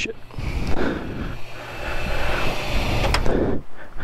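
Gasoline running from a pump nozzle into a Honda GoldWing's fuel tank: a steady rush that stops shortly before the end, with a sharp click about three seconds in.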